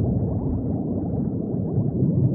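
Steady underwater bubbling: a dense stream of bubbles, heard as many overlapping short rising blips, low and muffled.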